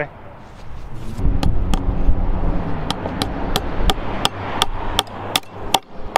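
Claw hammer nailing a metal fence bracket onto a wooden fence post. Sharp, ringing strikes: two about a second and a half in, then a steady run of about three a second.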